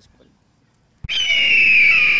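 A bird of prey's screech: one long, shrill call that slides slightly downward. It starts abruptly about a second in.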